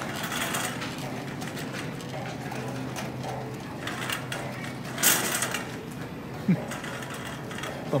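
Shopping cart being pushed across a store floor, its wheels rattling steadily over a low steady hum, with a brief louder rustle about five seconds in.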